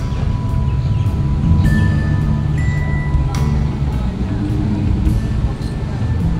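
Instrumental background music.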